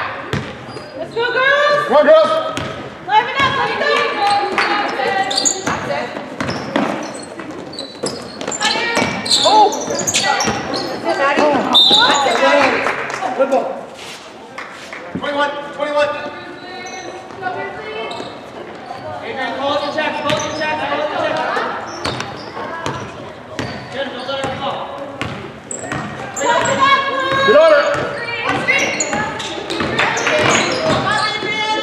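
Basketball bouncing on a hardwood gym floor, with many sharp knocks through the game play. Players and spectators call out almost continuously, and everything echoes in the large gym.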